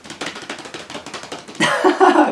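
A rapid run of small clicks for about a second and a half, then two men burst out laughing and exclaiming loudly near the end.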